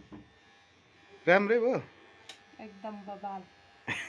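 A woman laughs briefly about a second in, followed by a few quiet spoken words, over a faint steady electrical buzz.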